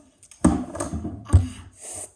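Two heavy thumps of a hand striking a wooden table, about a second apart, the second louder, with rubbing and rustling of hands between them.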